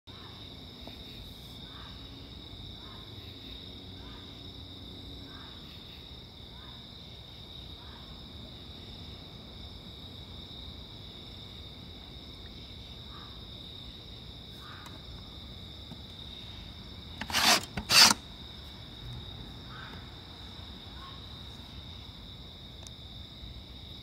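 Fox barking far away: a string of faint short barks about a second apart, over a steady high insect chorus. Two sharp knocks about three-quarters of the way through are the loudest sounds.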